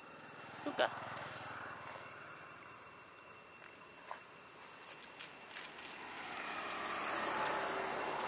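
A vehicle passing by on the road, its noise slowly swelling to a peak about seven seconds in and then fading.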